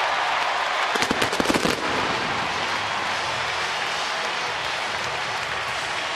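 Ballpark crowd cheering a home run, with a quick run of sharp cracks about a second in.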